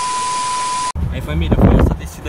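TV-static transition effect: an even hiss of white noise with a steady 1 kHz test-tone beep, lasting about a second and cutting off suddenly. A low rumbling noise with wind on the microphone follows.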